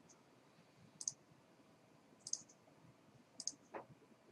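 Three quiet computer mouse clicks, a little over a second apart, each a quick double snap of the button pressed and released.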